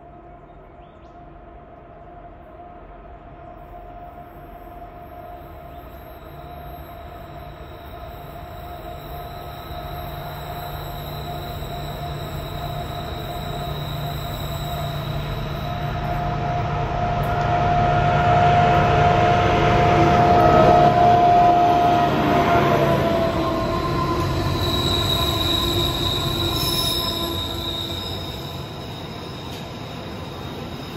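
Diesel freight locomotives approaching on curved track, their engines growing steadily louder to a peak about two-thirds of the way through, then wagons rolling past. A steady high-pitched squeal of wheels on the curve runs over the engine noise.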